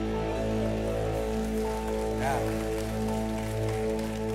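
Sustained keyboard pad chords held steady as music between songs, with light congregational applause and a brief voice about two seconds in.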